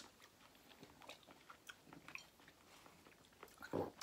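Faint chewing and mouth sounds of people eating fruit, soft scattered clicks, with a brief louder sound near the end.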